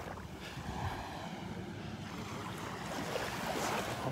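Steady beach ambience of gentle surf washing on the shore, with light wind on the microphone.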